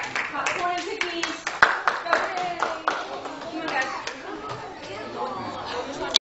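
Scattered hand clapping from a small group, uneven and mostly in the first three seconds, with indistinct voices of children and adults talking over it.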